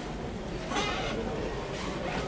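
A pause in a child's live Quran recitation over a public-address system: steady hum and hiss of the hall sound system, with a short breathy sound near the microphone about three-quarters of a second in and another near the end.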